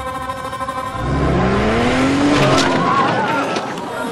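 A vehicle engine revving up from about a second in, its pitch rising, with tyres squealing near the middle. A held music drone sounds underneath at the start.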